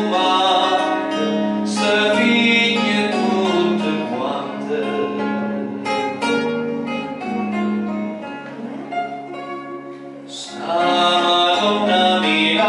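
A man singing into a microphone, accompanied by plucked acoustic guitar. The music turns softer about eight seconds in, then grows loud again about ten and a half seconds in.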